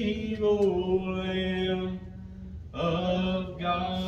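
Slow hymn music of long, steadily held notes and chords, with a short break a little past halfway before the next held chord.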